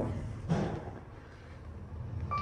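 Faint, steady running noise of a Kone EcoSpace machine-room-less traction elevator, heard from inside the moving cab, with a brief low sound about half a second in.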